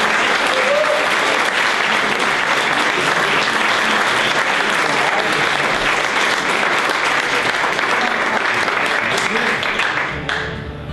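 Audience applauding steadily, thinning out at the very end.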